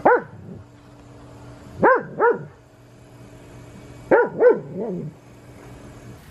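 A dog barking: one bark at the start, two quick barks about two seconds in, and two or three more about four seconds in, the last ones weaker.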